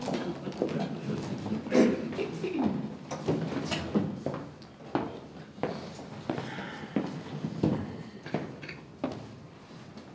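Chairs being pushed back and footsteps on a stage floor as several people get up and move about: a scattered run of knocks, bumps and shuffles.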